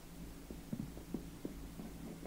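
Pause in a talk: room tone with a low steady hum and a few faint soft ticks.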